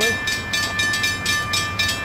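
Railroad grade-crossing warning bell ringing in an even rhythm of about four strikes a second. The crossing is activated for an approaching train.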